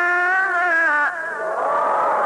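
A singer holds a long, wavering final note that ends about a second in. An audience in a large hall then breaks into cheering and applause.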